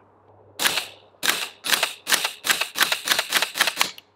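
A CMMG Mk57 Banshee 5.7x28 AR pistol with a Reaper suppressor firing subsonic 55-grain rounds semi-automatically: about ten short, sharp shots in quick succession, the pace quickening toward the end. The delayed radial blowback action cycles fully on each shot.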